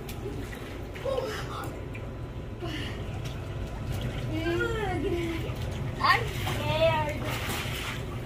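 Water splashing and sloshing in a small swimming pool as a child paddles with a foam pool noodle. Children's voices call out twice in the second half, over a steady low hum.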